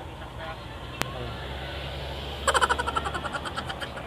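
Street background with a low, steady vehicle engine hum, a sharp click about a second in, and a short burst of rapid pulsing, about nine a second, past the middle.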